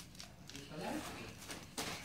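A person's voice, briefly and without clear words, in the middle, then a short rustle near the end.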